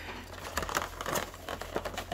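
Cardboard box and clear plastic packaging crinkling and rustling as hands open a Funko Pop box, with scattered small clicks.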